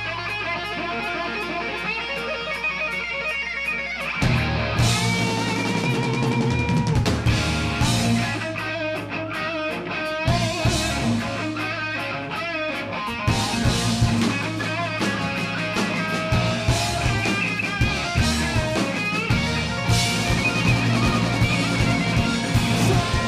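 Live rock band playing: distorted electric guitar over a bass line, with a ticking hi-hat at first and the full drum kit coming in about four seconds in.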